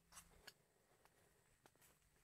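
Near silence, with two faint short clicks in the first half second.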